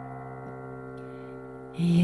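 A piano chord on a stage keyboard, held and slowly fading at the end of a ballad's keyboard intro. A woman's singing voice comes in just before the end.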